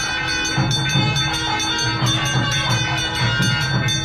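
Brass temple bell ringing fast and steadily, its tone ringing on between strokes, over a rhythmic low drum beat. This is the ringing that accompanies the waving of the lamp (aarti) in the puja.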